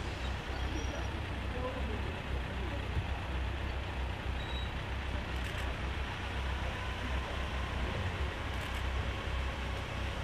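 Vehicle engines running with a steady low rumble, and faint voices in the background.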